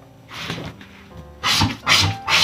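A stiff scratch-off lottery ticket being handled and slid aside, with a soft paper rustle early and two louder, sharp rustles near the end, over faint background music.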